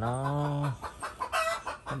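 A man's voice holding one drawn-out syllable for under a second, then a short, higher call about a second and a half in.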